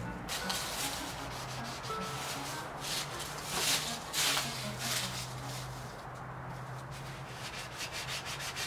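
Hand sanding of a wooden board with a 400-grit sanding sponge, heard as repeated rough rubbing strokes that are loudest about four seconds in.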